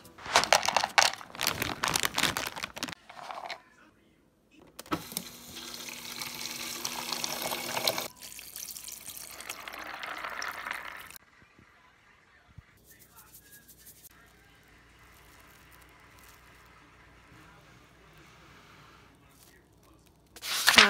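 Water poured from a plastic jug over raw almonds in a plastic bowl, setting them to soak for homemade almond milk: a steady pour lasting about six seconds. Faint small handling sounds follow.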